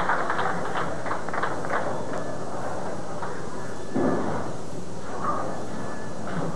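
Bowling-alley crowd and lane noise: a steady murmur, thick with short sharp clacks over the first three seconds, and a single thump about four seconds in.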